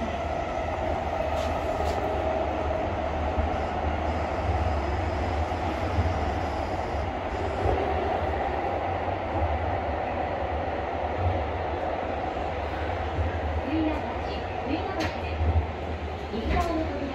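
Kyoto Karasuma Line 20 series subway train heard from inside the car while running through a tunnel: a steady deep rumble with an even hum above it. A few short clicks come near the end.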